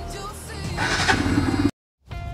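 Bajaj Pulsar RS 200's single-cylinder engine revved up from idle on the throttle, getting louder from about half a second in, over background music; the sound cuts off abruptly near the end.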